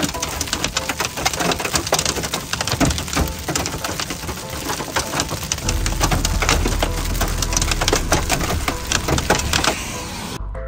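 Hail falling hard, heard from inside a vehicle: a dense, irregular clatter of sharp hits that does not let up.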